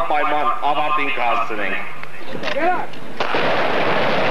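A man's voice speaking loudly into a handheld microphone. About three seconds in it cuts off abruptly and a loud, dense, continuous noise starts and keeps going.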